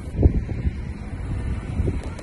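Wind buffeting a phone microphone through an open car window, with the low rumble of a car driving slowly; the strongest gust comes about a quarter second in.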